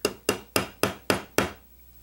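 Small brass-faced hammer tapping a steel pin punch six times, about four taps a second, to drive out the retaining pin of a Beretta PX4 Storm's slide-mounted safety lever. The taps stop about a second and a half in.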